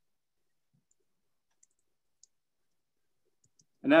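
Near silence broken by a few faint, short clicks, then a man starts speaking near the end.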